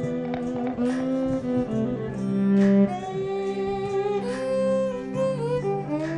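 Violin playing a slow melody of long held notes over a low sustained accompaniment.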